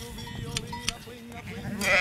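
A sheep bleating while it is held down on its back to be shorn.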